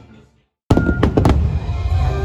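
Background music fades out into a brief silence, then fireworks start abruptly: several sharp bangs over a heavy low rumble, with music underneath.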